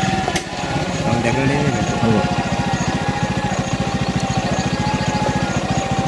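An engine running steadily with a fast, even pulse that sets in about two seconds in, with voices over it.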